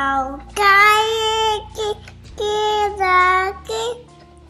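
A toddler singing a few held, wordless notes in a high voice, the longest about a second, with short breaks between them.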